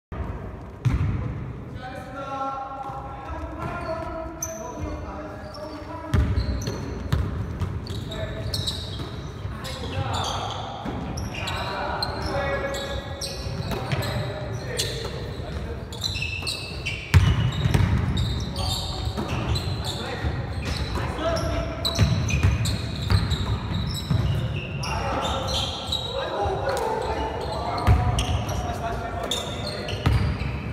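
Basketball bouncing on a hardwood gym floor during a game, with repeated sharp thuds and short high sneaker squeaks, echoing in a large hall. Players' voices call out at times.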